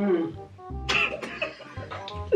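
Background music with a short vocal sound at the start and a brief noisy burst from a person's voice about a second in.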